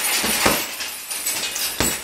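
Punches landing on a hanging heavy bag: sharp thuds at the start, about half a second in, and near the end.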